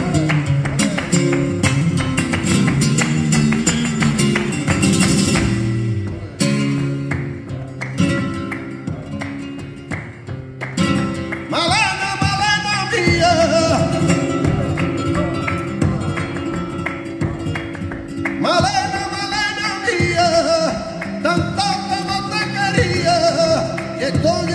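Flamenco guitar playing tangos over palmas, the sharp rhythmic hand-clapping of the accompanists. About halfway in, a male flamenco singer comes in with long, wavering sung lines, breaks off briefly, then sings on.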